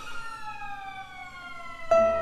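Violin playing one long bowed note that slides slowly down in pitch. Just before the end a guitar comes in with a sharply plucked note.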